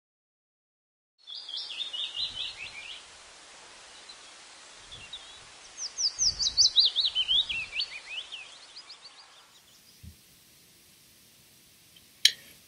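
A songbird singing two runs of rapid, high chirps over a steady outdoor hiss. The first run is short. The second is longer and falls in pitch, and the sound fades out before the end.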